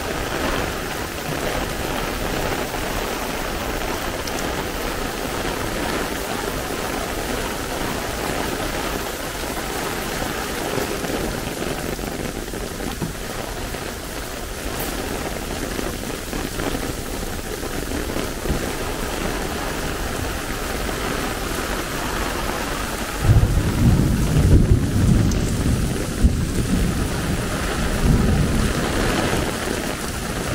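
Heavy rain falling steadily on pavement and road. About two-thirds of the way in, a loud, uneven rumble of thunder rolls for several seconds.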